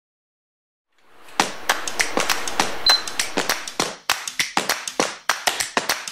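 Silence for about a second. Then a steady hiss fades in, under a fast, irregular run of sharp clicks, several a second.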